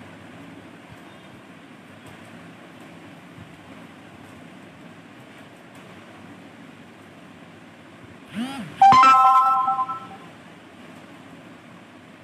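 Faint room noise, then about eight seconds in a short gliding sound followed by a loud electronic chime of a few steady tones that lasts about a second and fades out.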